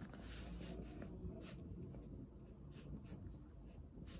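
A pen writing on paper: faint, short scratching strokes in an uneven run.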